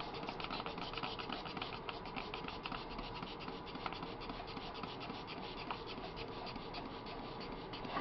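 Hand-held plastic spray bottle pumped over and over, a fast run of short spritzes misting water onto dry soil and leaf litter.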